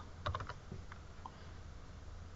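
A few light keystrokes on a computer keyboard in the first half-second, then a couple of fainter taps, over a steady low hum.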